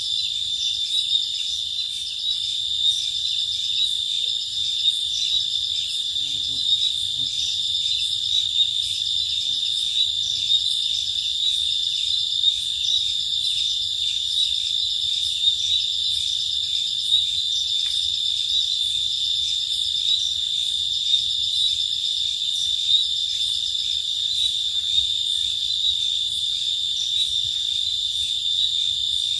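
Steady, high-pitched chorus of night insects, a continuous fast-pulsing trill that does not let up.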